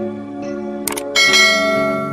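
Soft background music, with a sharp click just before one second in, then a bright bell chime that rings on and slowly fades. This is the click-and-bell sound effect of a subscribe-button and notification-bell animation.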